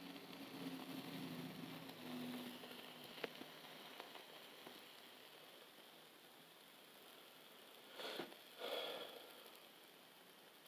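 Faint hiss and a few small crackles of a burning potassium permanganate and sugar mixture as its flame dies down to a glowing ember. Two brief louder sounds come about eight and nine seconds in.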